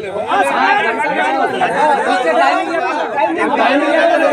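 Several men talking at once in lively, overlapping conversation.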